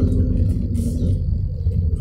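Steady low rumble of a car's engine and tyres heard from inside the cabin while the car moves slowly, with a brief soft hiss just under a second in.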